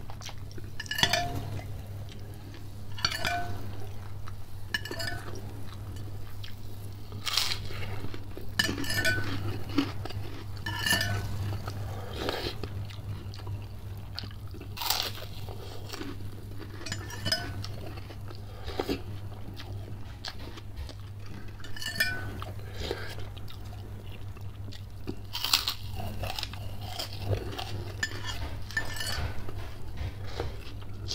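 Close-up eating sounds: a person chewing and crunching food, with a metal spoon clinking against a glass bowl now and then, over a steady low hum.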